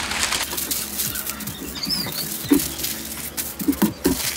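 Thin kite paper rustling and crinkling as a large sheet is folded and smoothed by hand on a wooden table, with many small crackles throughout.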